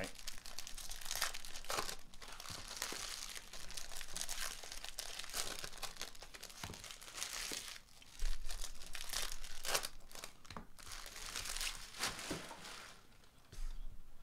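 Foil trading-card pack wrappers being torn open and crinkled by hand, with cards shuffled between the fingers: an irregular crackling rustle that eases off near the end.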